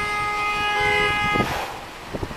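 Vehicle horn honking in one long held blast that cuts off about one and a half seconds in.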